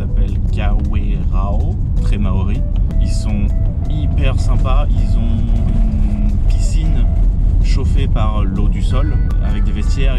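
Steady low road and engine rumble inside the cabin of a moving vehicle, with music and a voice playing over it.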